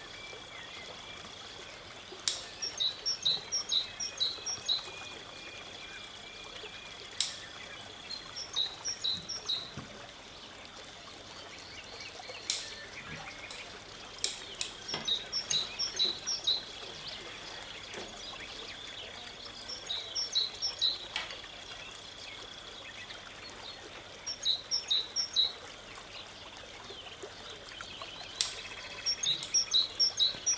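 A songbird singing short phrases of rapid high chirps every few seconds. Five sharp clicks at irregular moments are the snips of bonsai scissors cutting pine needles, and a faint steady high whine sits underneath.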